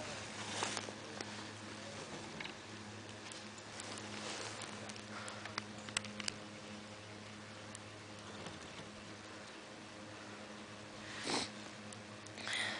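Faint sounds of a skier filming on the move: breaths and skis sliding on snow, over a steady low hum, with two louder rushes of noise near the end.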